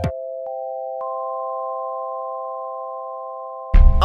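A sustained electronic chord of pure tones: two notes at first, a third joining about half a second in and a fourth at about one second, held steadily and fading a little. Near the end loud music with singing cuts in.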